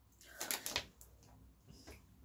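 A short cluster of faint clicks and rustles about half a second in, then a few weaker ticks: hands handling the truffles or their packaging on the table.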